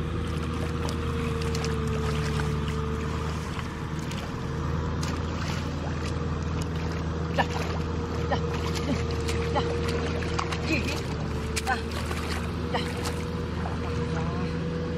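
A small engine running steadily in the background. Over it come light splashes of hands groping through shallow muddy water, with a run of sharper splashes in the second half.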